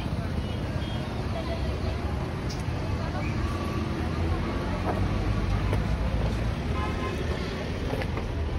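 Roadside street ambience: a steady low rumble of traffic with wind on the microphone, and people talking in the background.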